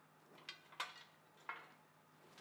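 A few faint ticks of crushed roasted hazelnut pieces falling from a metal baking tray onto roasted sweet potatoes in a ceramic bowl.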